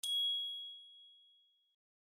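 A single bright chime from an end-card logo sting. It strikes once and rings out, fading away over about a second and a half.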